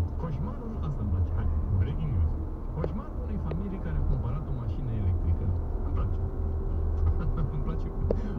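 A voice talking over the steady low rumble of a car driving, heard from inside the cabin.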